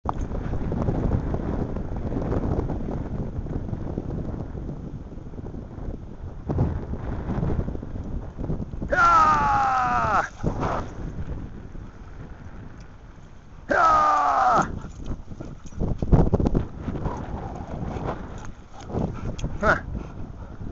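Wind rumbling on the camera microphone while walking outdoors, with scattered knocks of handling. Two long, loud pitched calls that slide slightly downward come about nine and fourteen seconds in.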